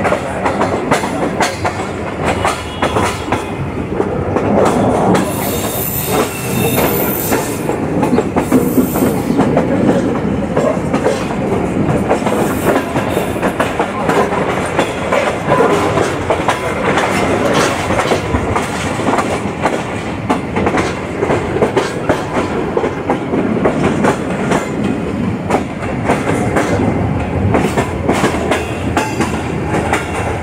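Passenger train coach wheels running over rail joints and points with a clickety-clack, heard from the coach's open door. A brief high squeal comes about five seconds in and lasts a few seconds.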